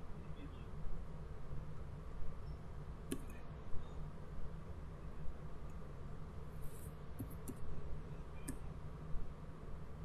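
A few scattered computer keyboard keystrokes: one click about three seconds in, a small run of clicks around seven seconds, and another near eight and a half seconds, over a steady low hum.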